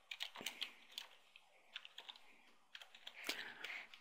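Typing on a computer keyboard: a quick, irregular run of faint keystrokes as a short word is typed.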